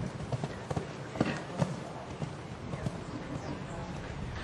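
Hoofbeats of a cantering horse on sand arena footing, a run of dull, uneven thuds with the two sharpest a little over a second and about a second and a half in.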